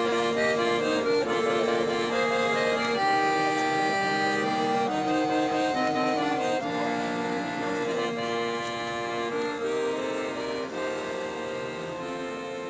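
Accordion music playing held chords under a slow melody line, gradually fading out.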